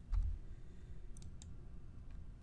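A soft low thump just after the start, then a few light, sharp clicks at the computer as the presentation slide is advanced.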